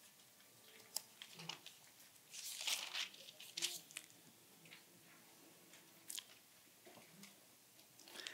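Faint rustle and crinkle of Bible pages being leafed through at a lectern, with a few light clicks and taps, the loudest rustle about two and a half seconds in.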